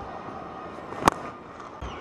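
Cricket bat striking the ball once, a sharp crack about a second in, over low stadium crowd noise.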